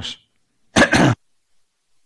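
A man clearing his throat in two quick bursts about a second in, over a cough that he says is getting worse.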